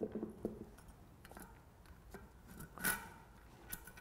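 Faint clicks and light metallic clinks as a Shimano cassette's steel sprockets, held on a plastic carrier, are lined up against the splines of a bicycle freehub body. One sharper click comes just before three seconds in.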